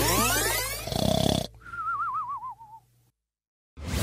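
Comic sound effects added in editing: a swishing whoosh of many rising glides, a short noisy burst, then a wobbling whistle that slides down in pitch.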